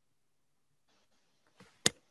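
Near silence, then a single short, sharp click shortly before the end.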